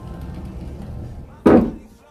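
A low rumble of handling, then about one and a half seconds in a single loud knock as a wooden wardrobe door swings shut.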